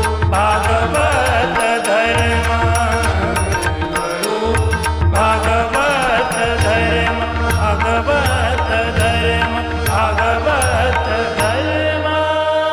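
Marathi devotional abhang music: a wavering melody over a steady drone, with a regular rhythm of sharp strikes and low drum beats.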